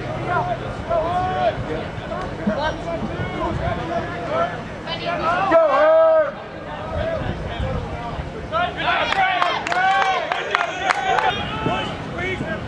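Players and people on the sideline shouting and calling out during a lacrosse game, with one loud drawn-out shout about six seconds in. From about nine seconds a burst of overlapping shouts and cheering rises, with a few sharp knocks mixed in.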